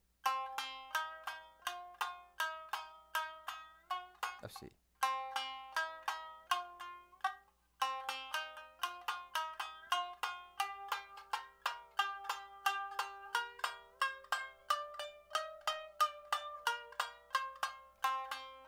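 Tsugaru shamisen played with a bachi: a run of quick plucked notes in alternating down and up strokes, about three to four notes a second, each with a bright, twangy ring. The run breaks off briefly twice, about four and a half and seven and a half seconds in.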